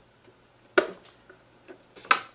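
A single sharp click about a second in as a cable connector inside an iMac is pried off its socket on the logic board with a tool.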